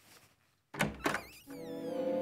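Two heavy thuds of a door being flung open, about a quarter second apart and some three-quarters of a second in, followed by a film-score sting: a cluster of falling whistling glides settling into sustained music chords.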